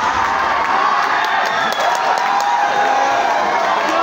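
Audience crowd cheering and shouting, many voices overlapping at a steady loud level, with a few sharp claps in the middle.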